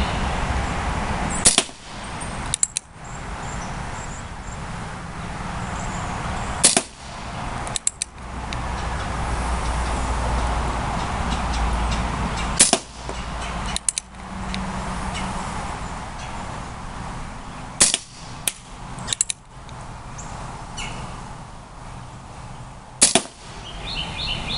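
Remington 1875 CO2 air revolver firing wadcutter pellets: five sharp shots about five seconds apart, each followed about a second later by a fainter click.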